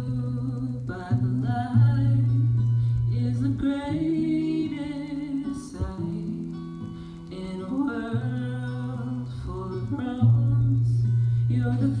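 Electric keyboard playing a slow song intro in sustained chords that change about every two seconds, the singer's voice coming in at the very end.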